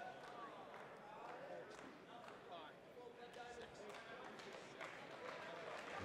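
Faint, distant voices with the low murmur of a small crowd in the hall.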